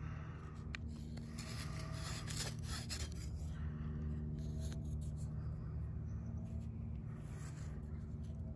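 Faint rubbing and handling noises as a wooden hand-drill hearth board is turned in the hand, with a few light clicks, over a steady low hum.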